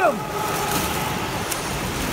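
A swimmer's strokes splashing in a pool: a steady wash of churning water noise.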